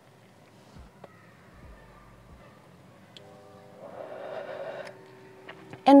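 Mostly quiet, with one soft breath lasting about a second, about four seconds in: a smoker drawing smoke during a French inhale. Faint steady tones sound underneath in the second half.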